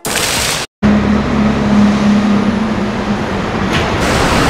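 Fountain jets splashing for a moment, then after a sudden cut the steady drone of a bus running, heard from inside the bus, with a low steady hum for most of the time.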